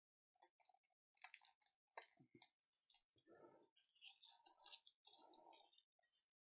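Faint, irregular crinkling and clicking of a trading card pack being handled: the plastic wrapper and the cards inside rustling between the fingers.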